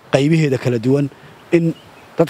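A man speaking Somali in short phrases, with a brief pause in the middle.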